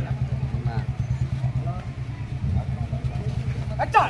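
A low, steady, pulsing drone like an idling engine, with faint voices from the surrounding crowd above it. A sharp click comes just before the end.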